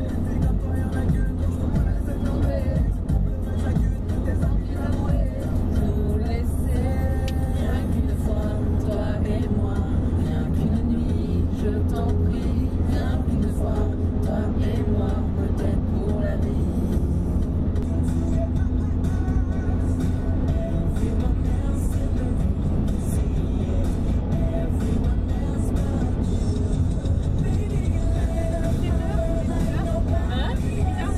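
Steady low road and engine rumble inside a moving car's cabin, with music and women's voices over it.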